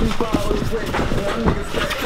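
Indistinct voices in the gym, with a few thuds and scuffs of two fighters grappling on the mat.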